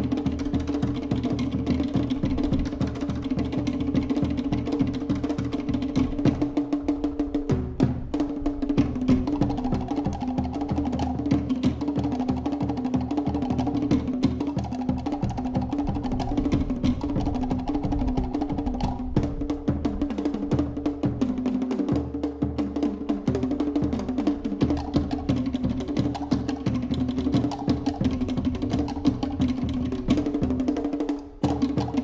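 Tahitian dance drumming: fast, continuous rolls on wooden to'ere slit drums over deeper drum beats. There is a brief break about eight seconds in.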